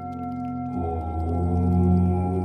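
Meditation music: a steady, bell-like drone of held tones, joined about three quarters of a second in by a deep, sustained "Om" chant that swells in loudness.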